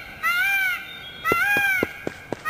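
Peacock calling twice, each call a short cry that rises and falls in pitch.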